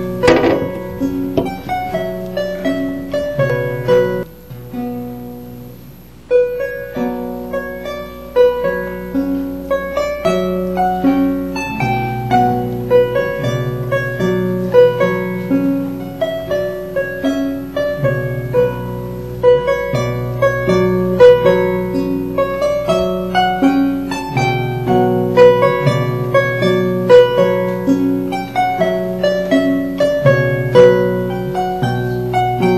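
Solo harp playing a jota, quick plucked notes in a steady rhythm. The playing dies away about four seconds in and starts again a couple of seconds later.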